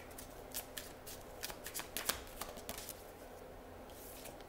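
A deck of oracle cards being shuffled and handled in the hands: a quick run of light, irregular card clicks and flicks that stops a little before three seconds in.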